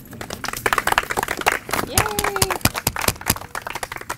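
A small group clapping their hands in applause, with one person calling out "Yay!" about two seconds in.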